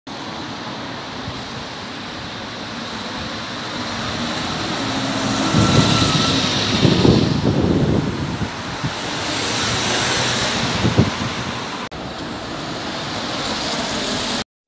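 Road traffic on a city street: a steady rush of vehicle noise that swells as a vehicle passes with a low engine rumble about six to eight seconds in, and again briefly near eleven seconds.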